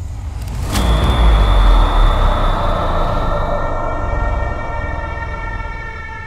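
Cinematic title-card sound effect: a sudden impact with a deep boom about a second in, then a sustained droning wash with steady high ringing tones that slowly fades.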